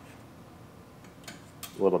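Near-quiet room tone with a couple of faint clicks of a screwdriver edge prying open a small tab on a windshield molding; a man's voice starts near the end.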